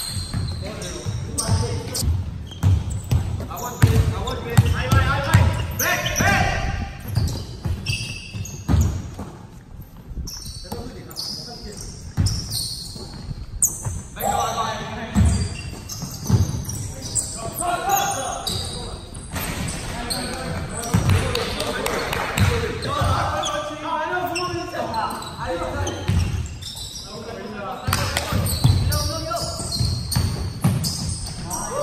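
Basketball pickup game on a hardwood gym floor: the ball thudding as it is dribbled and bounced, with players' indistinct shouts and calls.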